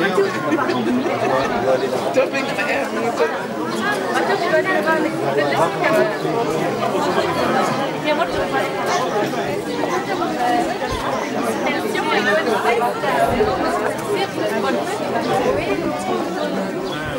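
Crowd chatter: many people talking at once in a steady, overlapping babble of voices.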